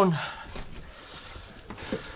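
A back door being opened and a small dog scampering out onto wooden deck boards: scattered light clicks and knocks.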